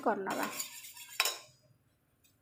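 Steel spoon stirring and scraping in a small stainless steel pot of melting sugar syrup, with one sharp clink against the pot about a second in; the stirring stops near the end.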